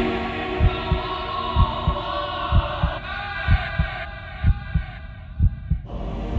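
Heartbeat sound effect: slow double thumps, about one pair a second. Under it, a music bed grows more and more muffled and thins out towards the end.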